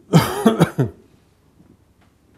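A man coughing: three quick coughs in under a second, just after the start.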